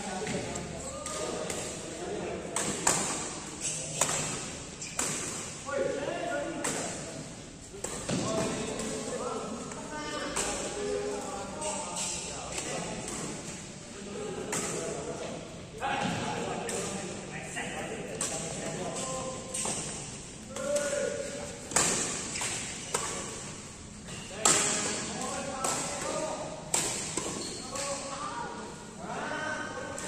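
Badminton rackets striking a shuttlecock, sharp hits at irregular intervals through a rally, echoing in a large indoor hall, with players' voices between the shots.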